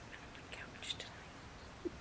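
Faint, breathy whispering from a person close to the microphone, a few short soft hisses around the middle.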